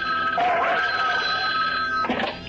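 Cartoon telephone ring sound effect: a steady, continuous high ring.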